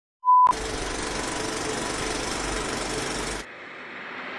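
A brief high beep of a test tone, then about three seconds of steady static hiss with a low hum underneath, which cuts off suddenly: a TV test-card sound effect.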